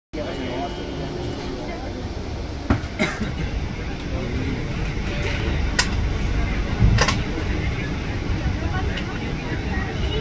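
Running passenger train heard from inside the coach: a steady low rumble with a few sharp knocks spread through it, under indistinct voices of people talking.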